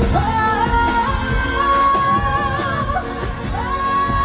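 A singer's voice holding long, wavering, ornamented notes in a melismatic vocal run over a pop backing track.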